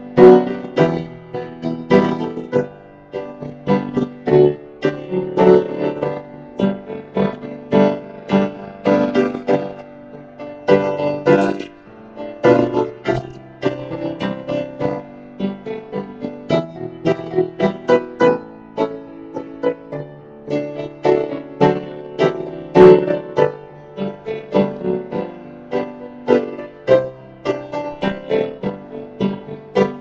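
Piano played solo: a continuous run of chords and melody notes, each struck note ringing and fading, with no singing.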